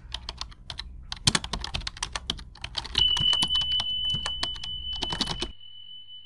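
Outro sound effect of rapid keyboard-typing clicks, joined about halfway by a steady high beep. The clicks stop shortly before the end while the beep holds on.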